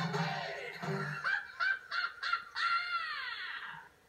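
The end of a cartoon song played through a television speaker. The backing music with its bass line stops about a second in, then cartoon hyena voices call out and hold one long note that slides down and fades near the end.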